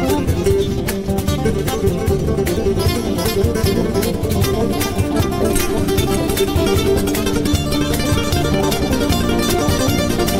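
Acoustic guitars, nylon-string and steel-string, playing a fast, busy instrumental together in a live performance, with quick picked notes throughout.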